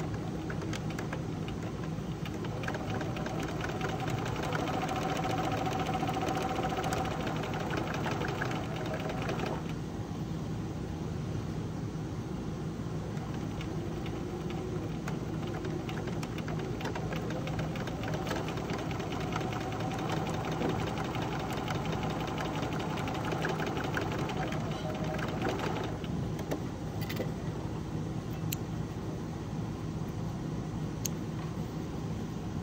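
Domestic electric sewing machine stitching a quarter-inch seam around a small fabric patch pocket, running in long stretches with short pauses, then stopping near the end, followed by a few light clicks.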